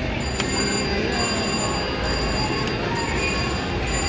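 Casino floor din: slot machines' electronic tones and hum, with a few sharp clicks and light ticking as a video slot's reels spin.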